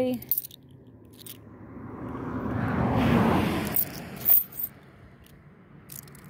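A car driving past, its tyre and engine noise swelling to a peak about three seconds in and then fading away. A few sharp clicks of 50c coins being handled, the loudest just after the car's peak.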